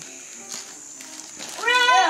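A child's short, high-pitched squeal near the end, rising then falling, after a quiet stretch of room sound.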